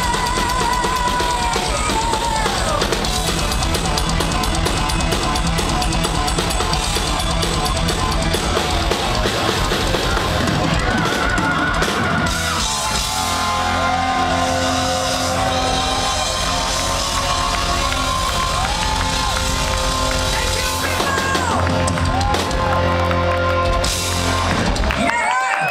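Live metal band playing loud and steadily: an electric guitar lead with bends and vibrato over a busy drum kit and bass, heard from within the audience.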